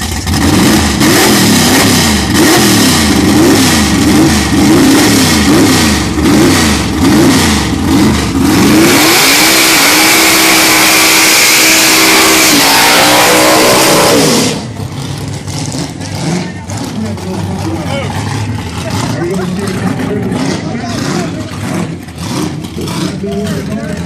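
First-generation Chevrolet Camaro drag car's engine revving hard, its revs swinging up and down, then held high for about five seconds while the rear tyres spin and screech in a smoky burnout. The sound cuts off abruptly, leaving the engine running at a lower rumble.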